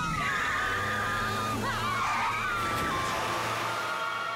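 Cartoon car-chase sound effects: a car engine running and tyres squealing, mixed with background music and high-pitched screaming.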